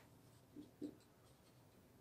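Marker pen writing on a whiteboard, very faint: two short strokes a little after half a second in, otherwise near silence.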